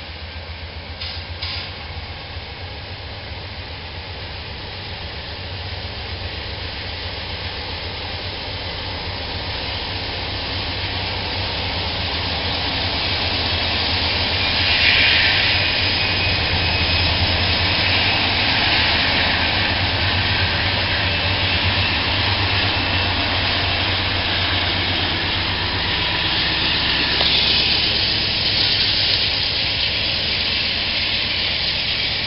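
Norfolk Southern freight train led by a GE C40-9W diesel locomotive approaching and passing close by: a steady low diesel engine hum with wheel and rail noise. It grows louder over the first half and stays loud as the locomotives and cars roll past.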